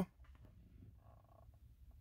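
Near-quiet car cabin: only a faint, steady low rumble between voice commands.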